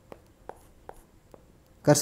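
Faint stylus taps on a tablet screen while writing on a digital whiteboard: about four light ticks roughly half a second apart. A man's voice starts near the end.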